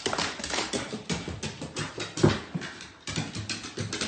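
A dog's claws and paws tapping and clicking in quick, irregular steps on hardwood stairs as it climbs them, with a brief pause about three seconds in.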